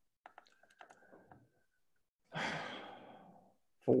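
A person's long sigh: one breathy exhale a little past halfway through that fades out, after a few faint clicks.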